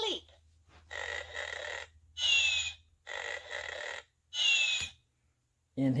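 Electronic cartoon snoring sound effect from a children's sound-book button: two snores, each a rasping in-breath followed by a high whistle falling in pitch on the out-breath. A brief downward sweep sounds right at the start.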